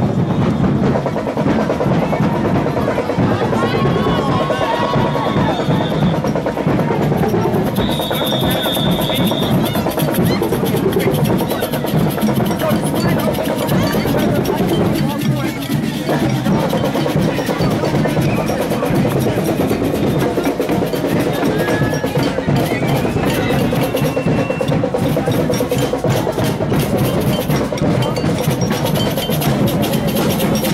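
Parade percussion, drums and other struck instruments, playing steadily over a crowd's chatter, with a couple of brief high steady tones about four and eight seconds in.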